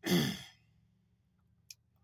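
A man sighing once: a breathy, voiced exhale about half a second long that falls in pitch. A faint click follows near the end.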